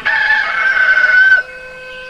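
A rooster crowing: one long held call that sags slightly in pitch and cuts off about a second and a half in, followed by a steady tone.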